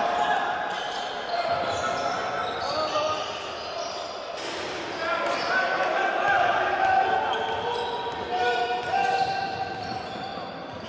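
Live basketball in a gym hall: the ball bounces on the hardwood court, sneakers squeak with short, high, flat-pitched chirps, and players' voices echo in the hall.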